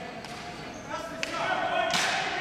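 Ball hockey play on a gym floor: a few sharp clacks of sticks and the ball on the hard floor, the loudest near the end, ringing in the large hall, with players calling out.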